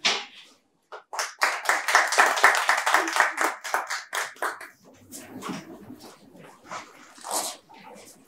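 A small group applauding in a room, a quick run of claps that starts about a second in and dies away after about three and a half seconds, followed by softer rustling and low talk.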